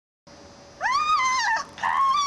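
A dog whining: two high, drawn-out whimpers, the first rising and then falling away, the second beginning near the end.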